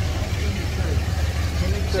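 Steady low rumble of street traffic, with faint voices.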